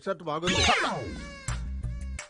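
A meow: one loud call that rises and falls in pitch, used as a comic sound effect. Low background music comes in about one and a half seconds in.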